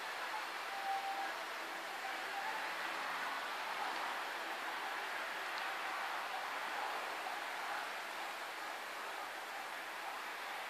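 Electric sectional garage door closing under its motor-driven opener: a steady running noise of the drive and the door rolling down its tracks.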